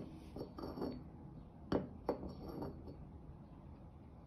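Ceramic coffee cup clinking against its saucer: a few light, separate clinks, the sharpest one a little before halfway through and another just after it.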